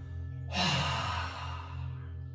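A person's forceful out-breath through the open mouth, one audible sigh lasting about a second and starting half a second in: the release breath after a whole-body stretch. A steady background music drone runs under it.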